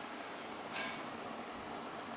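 Steady low background noise of the recording, with one short noisy burst a little under a second in.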